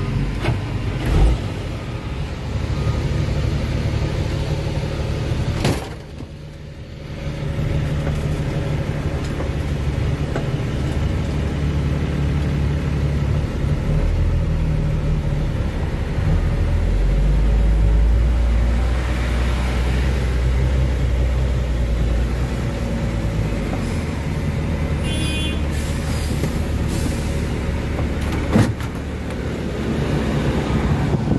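Heavy diesel engine noise heard from inside a truck cab as a container reach stacker manoeuvres close alongside. The low drone swells deeper and louder for several seconds past the middle, with a couple of sharp knocks.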